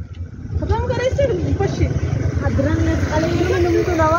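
Indistinct high-pitched voices talking, over a steady low rumble.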